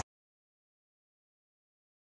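Silence: the sound track cuts off completely at the very start and stays dead.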